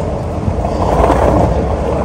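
Skateboard wheels rolling over a concrete sidewalk, a steady low rumble that swells about a second in, mixed with passing street traffic.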